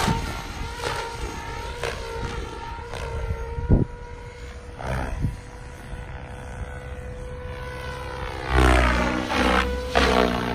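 SAB Goblin Black Thunder 700 electric RC helicopter in aerobatic flight: a steady high whine from the motor and drivetrain under the whooshing swish of the main rotor blades. About four seconds in there is one sharp blade swish. The sound is loudest near the end, its pitch bending as the helicopter comes by overhead.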